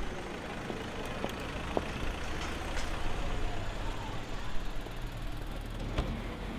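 Busy street ambience: a large road vehicle's engine running low and steady, with a few short clicks and faint voices of passers-by.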